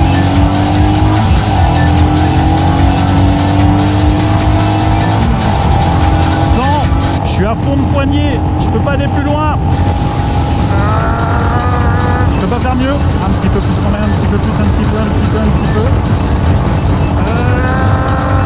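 Royal Enfield Himalayan's single-cylinder engine held at full throttle on a motorway, its note climbing slowly and then holding near top speed, under heavy wind rush. Short voice- or music-like sweeps come in about midway.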